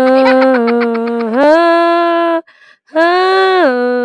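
A song playing, its singing voice holding long sustained notes, with a brief break about two and a half seconds in.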